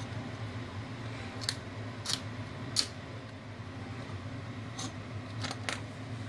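A handheld lighter struck about six times at uneven intervals, sharp clicks over the steady low hum of a portable monoblock air conditioner running on its second fan stage.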